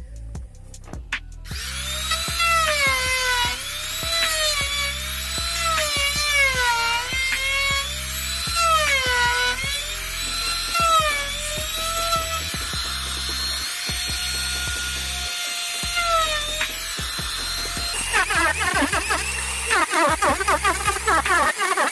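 Handheld electric trim router running as it cuts into a wooden window sash. Its whine rises and falls in pitch as it works, starting about a second and a half in and stopping near the end. Background music with a steady beat plays underneath.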